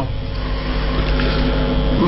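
A steady low hum with an even hiss above it, holding level without change.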